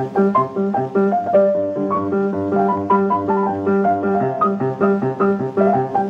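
Solo piano from an old film soundtrack, played in a lively, steady rhythm: an alternating bass under a quick melody in the treble.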